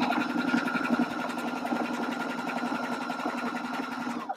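Electric sewing machine running fast and steady, stitching a straight seam through cotton fabric, its needle strokes making a rapid, even patter over a constant motor hum.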